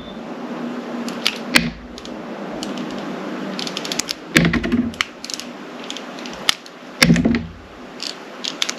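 Knife slicing through a soft glycerin soap bar, shaving off thin layers: clusters of crisp clicking crackles, with a heavier cut three times, every two to three seconds.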